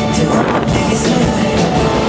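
Live pop-rock band playing loudly, with electric guitars and drums, heard from the audience seats.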